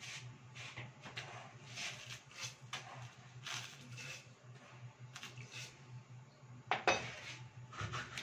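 Kitchen utensils and a pan clinking and knocking while tea is being made: scattered light clinks, with a louder knock about seven seconds in, over a low steady hum.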